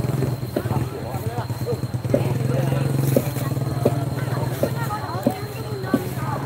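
Crowd of people talking, over a steady low hum, with a short sharp knock every second or so.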